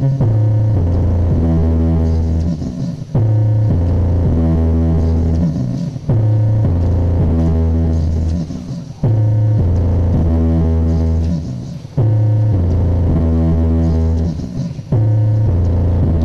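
Loud bass-heavy electronic music played through a mini sound system's stacked speaker cabinets, a phrase of sustained deep synth bass notes that restarts about every three seconds.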